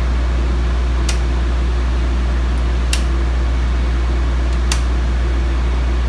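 Circuit breakers in a Siemens panel snapping on one at a time: three sharp clicks about two seconds apart. They are switched in stages so the generator can take up each load. Under them runs the steady low hum of the Powertech 20,000-watt generator and the air-conditioning unit.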